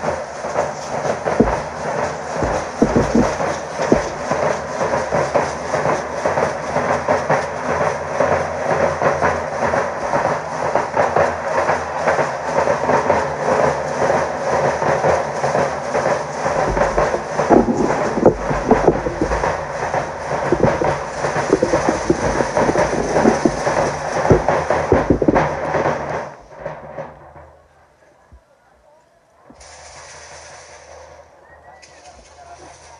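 Danza drum band of bass drums and snare drums beating a fast, driving rhythm without pause, with the dancers' hand rattles shaking along. The drumming stops about four seconds before the end.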